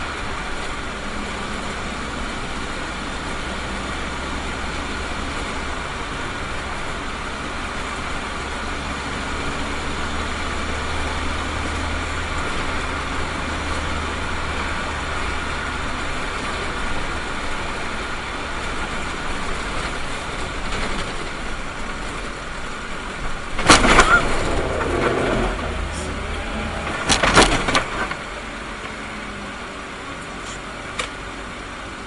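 Steady engine and road noise from inside a minibus driving on a wet road, with a low engine hum that fades about halfway through. Near the end come two loud bangs, about three seconds apart, the first followed by a rattling clatter.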